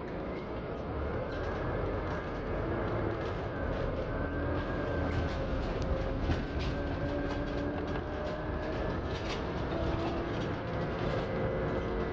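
Ride inside a moving city transit vehicle: a steady rolling rumble with whining tones that glide slowly up and down in pitch as it changes speed, and scattered light rattles.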